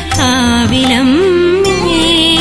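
A song in Indian classical style: one voice sings a phrase with bending, ornamented pitch, then holds a long steady note from about halfway through, over instrumental accompaniment.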